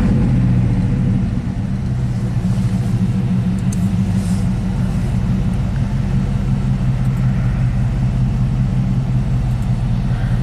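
1987 GMC 1500 pickup's engine idling steadily, heard from inside the cab, with a steady low hum.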